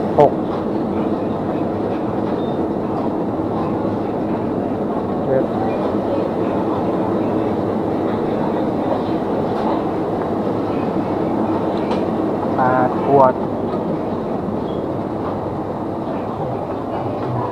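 Steady hum and rumble of refrigerated open-front display coolers and store ventilation. A short spoken word comes just after the start and another about thirteen seconds in.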